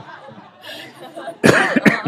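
A person coughing twice in quick succession, about a second and a half in, after a quieter moment of faint room sound.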